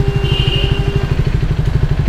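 KTM Duke 200's single-cylinder four-stroke engine idling with a steady, even low pulse.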